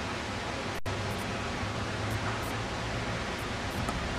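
Steady, even hiss of outdoor noise on the camera microphone, with no distinct events, cutting out for an instant just under a second in.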